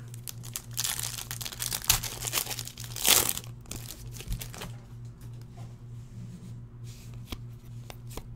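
Foil wrapper of a trading card pack being torn open and crinkled by hand: a run of crackling rustles over the first few seconds, loudest about three seconds in. It is followed by softer rustles and clicks as the cards are handled.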